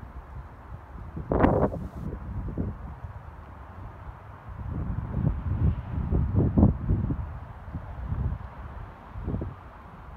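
Wind buffeting the microphone in irregular low rumbling gusts, with a sharp gust about a second in and a longer, stronger stretch in the middle.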